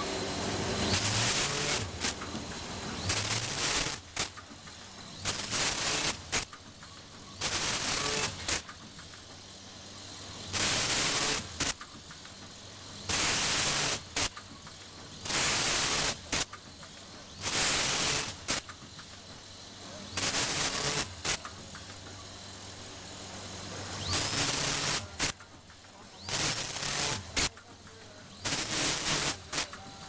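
Vertical film-pulling packaging machine running through its cycles: a loud hissing burst lasting about a second roughly every two to three seconds, over a low steady hum.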